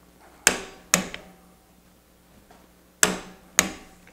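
Torque wrench on an AR castle nut wrench clicking as it reaches its set torque, signalling the castle nut is torqued down. Two pairs of sharp metallic clicks, each pair about half a second apart, the second pair coming a couple of seconds after the first.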